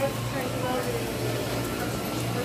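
Store ambience: faint voices in the background over a steady ventilation hum.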